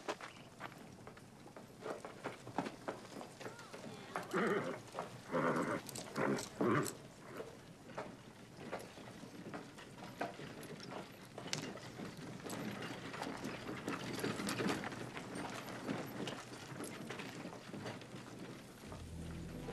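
Horses standing and shifting about, hooves stepping on a dirt street, with a horse giving a few short nickering calls about four to seven seconds in.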